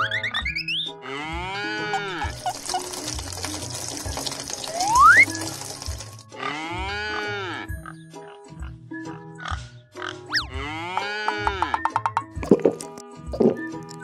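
Children's background music with cartoon sound effects laid over it: three short squealing animal cries, pig-like, and a few quick rising whistle slides, with a hissing stretch in the first half.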